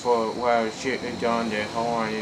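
A man's voice, talking rhythmically and repetitively, over a faint steady high-pitched whine.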